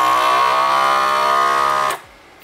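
FoodSaver vacuum sealer running, a steady motor hum that cuts off suddenly near the end as the machine works on the edge of a Mylar balloon.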